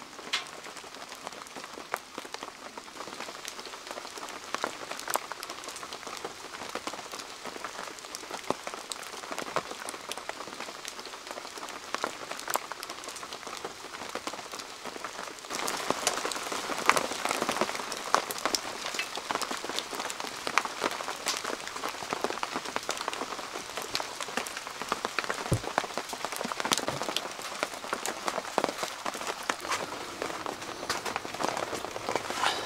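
Steady rain with many separate drops pattering close by. About halfway through it grows louder and the patter gets denser.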